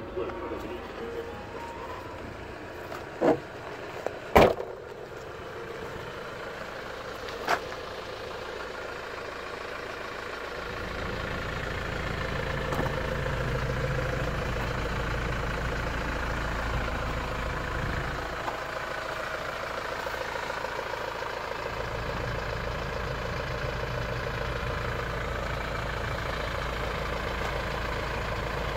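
A few sharp knocks in the first eight seconds, then, from about ten seconds in, the steady low rumble of a car engine idling.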